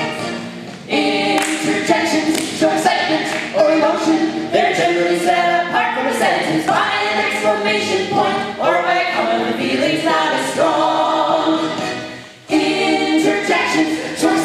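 A small group of men and women singing a lively show tune together in harmony, with short breaks between phrases about a second in and near the end.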